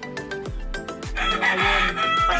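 About a second in, a rooster crows loudly over background music with a steady beat, its harsh call running on for about a second and dropping in pitch at the end.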